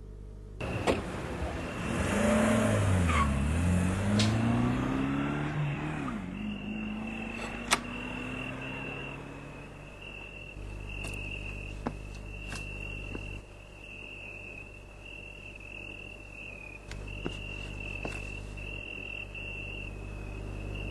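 A sudden loud sweeping sound under a second in, falling and then rising in pitch over about five seconds, like a car passing. Then a steady high chirring of crickets with a few faint clicks.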